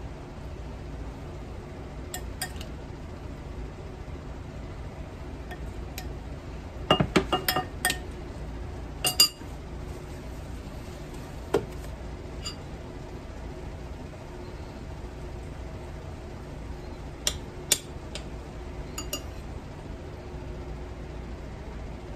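A metal spoon clinking against a bowl and serving dish as sliced strawberries are spooned over cake. Scattered light clinks come in two clusters, a third of the way in and again near the end, over a steady low hum.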